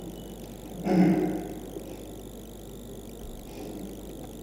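Steady low background noise from a live audio link, with one short wordless vocal sound, a hesitant 'uh', about a second in.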